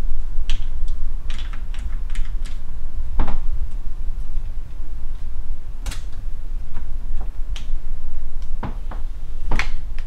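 Plastic and metal pushchair parts being handled and fitted together: scattered sharp clicks and knocks as a wheel and fittings are worked by hand, with louder knocks about three seconds in, about six seconds in, and twice near the end, over a steady low hum.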